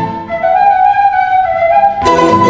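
Andean vertical flute playing alone: one long held note comes in about half a second in, while the guitar strumming drops out.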